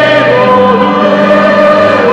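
Choir singing, several voice parts holding long notes together and moving from note to note every second or so.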